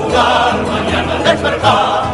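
A choir singing a religious song with musical accompaniment.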